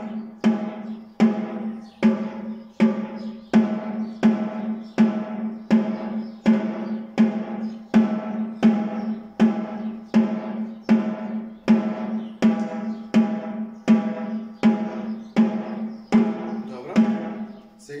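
Snare drum struck with sticks in a slow, even stream of single strokes, about four every three seconds, each ringing briefly. This is a beginner's basic stroke exercise, and the strokes stop shortly before the end.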